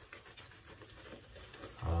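Shaving brush scrubbing thick soap lather onto a bearded cheek: a soft, scratchy swishing of bristles against stubble.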